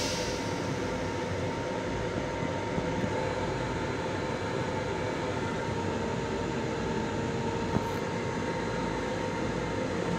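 Steady interior noise of a Long Island Rail Road M7 electric railcar heard inside its small restroom: an even rush with a steady hum at two pitches. A single small click comes near eight seconds in.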